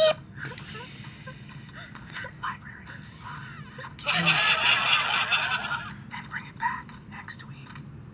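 A cartoon's soundtrack playing through computer speakers and picked up across the room: quiet voices with some background music. A short loud sound comes right at the start, and a louder, hissy stretch of sound runs for about two seconds from around four seconds in.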